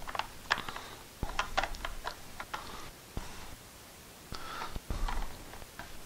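Hard plastic clicking and knocking as the two halves of a central vacuum hose handle are pressed and worked together by hand. A quick run of clicks in the first three seconds, then another cluster near the end.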